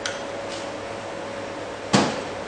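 A plastic squeeze bottle set down on a bar counter with a single sharp knock near the end, over a steady background hum.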